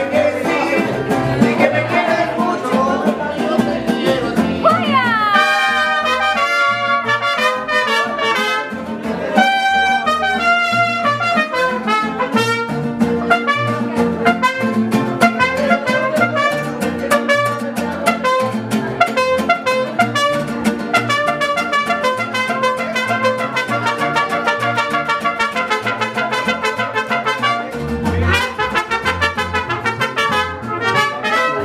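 Live mariachi band playing: trumpets leading over strummed guitars in a steady, lively rhythm.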